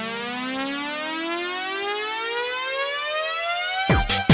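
Electronic synthesizer riser: one tone with many overtones sliding slowly and steadily upward in pitch. Just before the end it breaks off as a techno beat with a heavy kick drum comes in.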